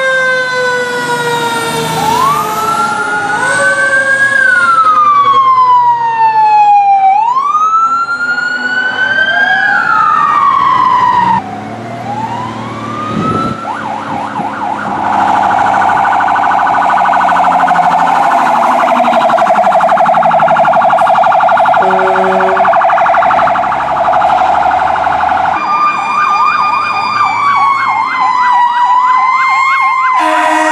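Fire truck sirens in a string of clips: first a siren that winds up quickly and falls away slowly, twice, over a wailing siren; then a fast warbling yelp siren with a short horn blast about two-thirds through; then a slow rising-and-falling wail near the end.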